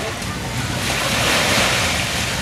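Small waves washing onto a sandy beach, the wash growing louder about halfway through, with wind on the microphone.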